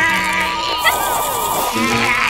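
Cartoon background music with held tones, over a short wordless, strained vocal effort from a cartoon character.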